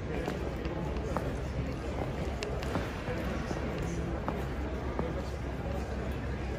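Outdoor night ambience on stone paving: a steady low rumble with faint snatches of people talking and scattered short clicks like footsteps.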